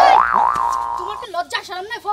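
A comedic cartoon 'boing' sound effect: one pitched tone that rises and wobbles up and down, lasting just over a second.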